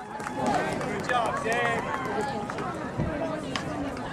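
Indistinct chatter of many overlapping voices from a crowd of spectators and athletes at a track meet, with no single clear speaker. There is a dull thump about three seconds in.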